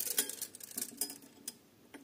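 A few faint, scattered clicks and taps of a steel tape measure and pencil being handled against a copper pipe while measuring and marking it.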